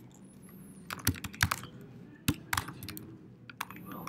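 Typing on a computer keyboard: a run of irregular keystrokes beginning about a second in, entering a short line of code.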